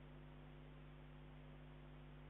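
Near silence: a faint, steady electrical hum with low hiss from a live camera's audio feed, with no distinct event.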